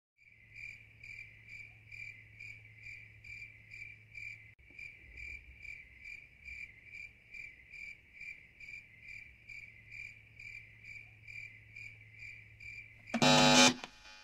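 A high chirp pulsing evenly about twice a second, cricket-like, over a low steady hum. Near the end a short, much louder burst of music breaks in and stops abruptly.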